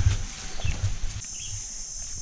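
Footsteps on a grassy, muddy trail with low thumps of walking, under a steady high-pitched insect drone that grows louder about a second in, and a few short bird chirps.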